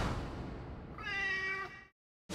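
A single cat meow lasting under a second, starting about a second in, after the fading tail of a loud noisy hit.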